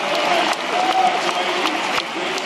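Large audience applauding: dense clapping, with single sharp claps standing out, and voices under it.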